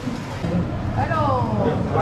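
A steady low mechanical hum starts about half a second in, with a voice briefly over it.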